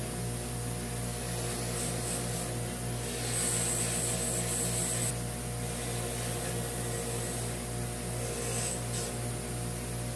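Bench buffing machine running steadily with a motor hum while a small metal part is pressed against the spinning cloth buffing wheel. The hiss of polishing grows louder from about three to five seconds in, and again briefly near the end.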